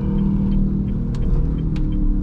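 Honda car engine running at low revs, heard inside the cabin, with the clutch half-engaged in second gear during a slow left turn. There is a steady hum with road rumble underneath and a faint tick about every half second.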